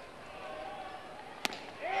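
A baseball at 96 mph popping once into the catcher's mitt on a swinging strike three. Under it runs a low, steady ballpark crowd murmur.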